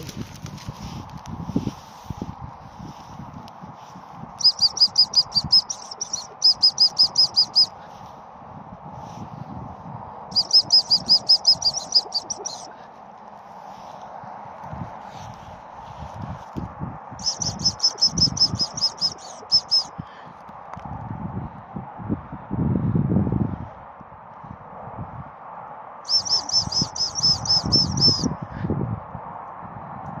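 Gundog whistle blown in quick trains of high pips, about five a second, in five bursts of a second and a half to two and a half seconds each. This is the hunt whistle encouraging the retriever to search the undergrowth.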